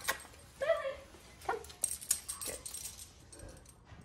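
A small dog gives a short whine about half a second in and a brief second one a second later, followed by a quick run of light clicks and rattles.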